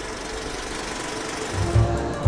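Steady, fast rattle of a film projector sound effect with a crackling hiss. About a second and a half in, music with a low bass line starts up.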